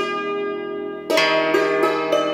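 Background music on a plucked string instrument: a held chord fades away, then a new plucked chord rings out about a second in.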